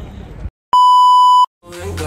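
A loud, steady electronic beep tone lasting under a second, edited in between clips; a brief snippet of voice ends before it and music starts just after it.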